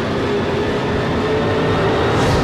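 Film trailer sound design for a whaling-ship sea drama: a loud, steady, dense rumble with one held tone running through it.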